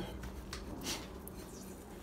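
Faint soft brushing of a wet crappie fillet settling and moving in a bowl of dry fish-fry breading mix, over a low steady hum.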